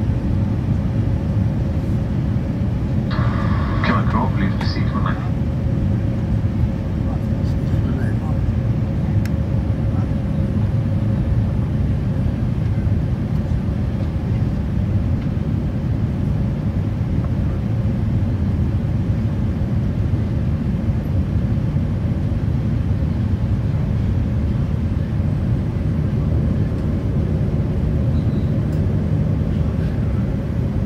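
Jet airliner cabin noise on the descent to landing, heard at a window seat beside the engine: a steady low rumble of engine and airflow with a faint steady hum. A brief higher sound breaks in about three seconds in.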